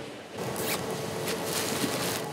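Packing tape being pulled off a roll to seal a cardboard box, a rasping tear in several strokes starting a moment in. A faint steady machinery hum runs beneath it.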